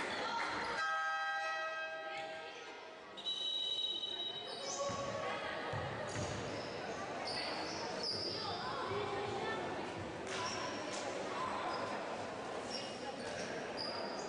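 Basketball bouncing on a wooden gym floor in a large, echoing hall, with a steady horn-like buzzer tone about a second in and a single high whistle note just after it. Short high squeaks and background chatter run through the rest.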